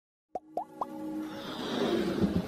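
Electronic intro jingle: three quick plopping blips about a quarter second apart, each sliding up in pitch and each higher than the one before, then a swelling whoosh that builds toward the end.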